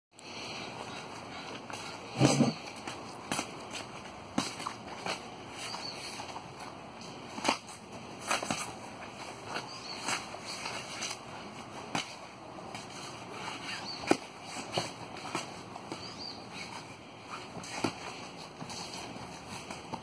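Foam-padded practice spears knocking and clacking against each other in irregular strikes during sparring, with one louder knock about two seconds in.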